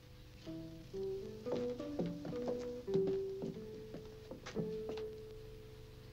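Film score music: a slow melody of single plucked guitar notes, starting about half a second in.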